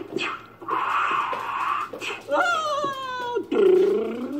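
Vocal sound effects in play: a breathy rushing noise, then a high voice sliding down in pitch, then a loud low wavering voice near the end.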